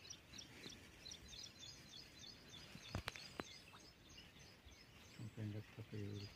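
Faint outdoor ambience of small birds chirping in quick, high repeated notes. A sharp click comes about halfway through, and a low voice starts near the end.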